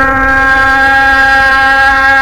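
A male Qur'an reciter's voice holding one long, steady note at an unchanging pitch: a drawn-out vowel of tajweed recitation.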